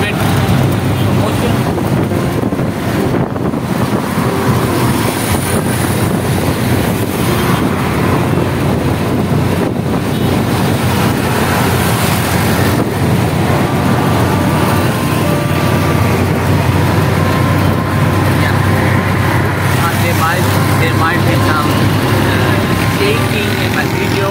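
Auto-rickshaw engine running with a steady low drone, mixed with road and wind noise, heard from inside the open cabin while it drives through traffic.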